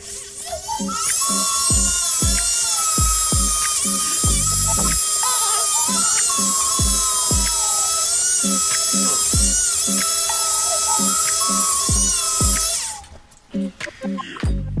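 Mini rotary tool (Dremel-style mini grinder) running at high speed with its bit on a coin, cleaning the metal; the high whine wavers in pitch as the bit is pressed on. It starts about half a second in and cuts off about a second before the end. Background music with a steady beat runs underneath.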